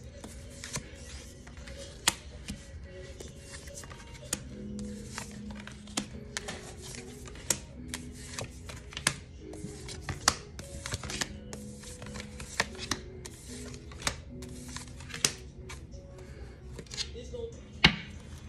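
Oracle cards being dealt one at a time onto a wooden tabletop, each landing with a sharp tap, roughly one a second at an uneven pace, over soft background music.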